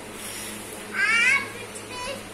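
A young child's brief high-pitched, wavering vocal sound without words, about a second in, over a faint steady low hum.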